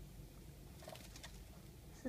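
A few faint, short chirps from a young Eurasian tree sparrow about a second in, over quiet room tone.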